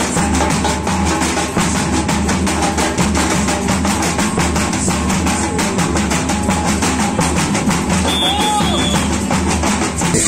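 Samba batucada: a street percussion group playing surdo bass drums and snare drums in a fast, driving, unbroken groove.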